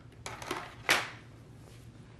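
Hard plastic robot-vacuum cover being set down on a wooden floor: a short clatter of light knocks, the sharpest about a second in.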